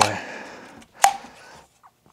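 Hard plastic vacuum attachments being handled, with one sharp click about a second in as the pieces knock or snap together, and light rustling before it.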